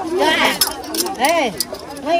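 Several people talking close by, with a few light clinks of tableware, bowls and spoons, in the first second.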